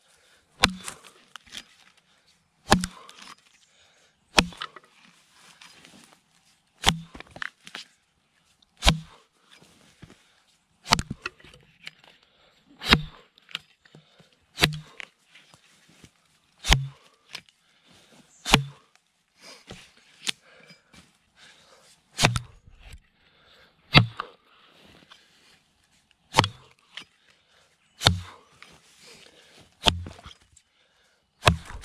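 Axe chopping into a log: a sharp strike with a thud about every two seconds, some fifteen blows in all, with lighter knocks between them.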